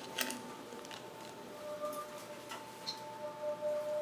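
Seibu 2000 series electric train heard from inside, running quietly: a faint steady hum with two steady tones and a few small clicks.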